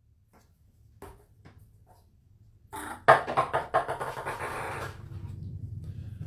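Light plastic lottery ball dropped into a large plastic water-jug lottery machine, clattering and bouncing inside it for about two seconds, with a few faint handling clicks before it.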